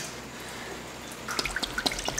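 Liquid being poured into a glass baking dish, trickling and dripping, with a few distinct drips in the second half.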